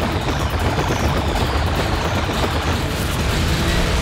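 Action-scene film soundtrack: music mixed over a dense, loud, continuous roar of explosions and fire with heavy low rumble.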